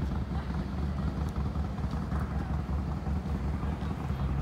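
Wind buffeting a phone microphone outdoors, a constant low rumble that rises and falls in gusts.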